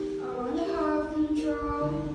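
A young teenager's voice singing into a microphone, sliding up into a held note about half a second in, over steady sustained chords from the accompaniment.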